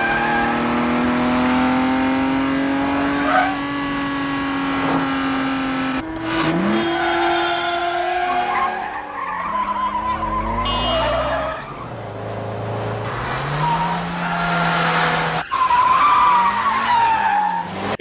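Film car-chase soundtrack: car engines revving hard, their pitch climbing, with tyre squeal, and the sound jumping abruptly at edits about six seconds in and again near the end.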